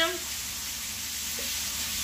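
Ground lamb sizzling steadily as it browns in a skillet.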